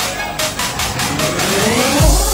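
Tekstyle/jumpstyle dance music at a breakdown: the kick drum drops out about half a second in and a rising sweep, with a voice in it, builds toward the drop.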